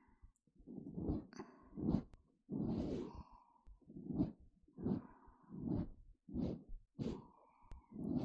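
Close-miked binaural ear-cleaning sounds: an irregular run of short rubbing, scraping strokes along the rim of the ear, about one a second.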